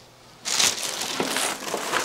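Plastic packaging bag crinkling and rustling as it is rummaged through and handled, starting about half a second in.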